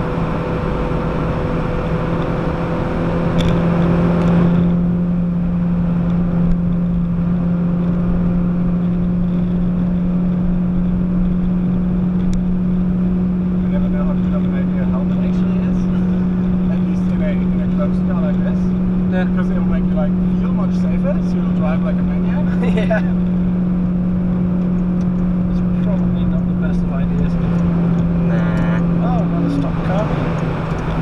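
Citroën DS3's 1.6-litre four-cylinder petrol engine pulling steadily at track speed, heard from inside the cabin over road and wind noise, with a brief swell about four seconds in.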